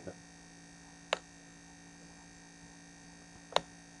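Steady low electrical mains hum, with two sharp clicks about two and a half seconds apart.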